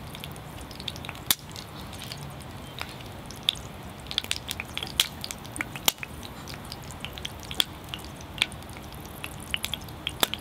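Hot oil in a cast iron skillet heated by a solar water lens, sizzling faintly with many irregular sharp crackles and spits.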